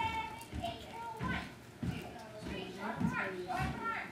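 Children's voices chattering in the background, with no single clear speaker.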